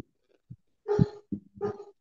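A dog barking a few short times, starting about a second in, heard over a video-call microphone.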